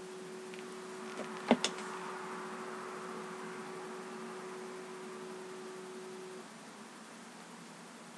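A steady low hum over a faint hiss, with one short sharp click about a second and a half in; the hum stops a little after six seconds.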